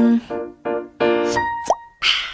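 K-pop song sung by a female vocalist. A held sung note gives way to short sung notes with accompaniment. Near the end a brief rising glide is heard, then the sound cuts off.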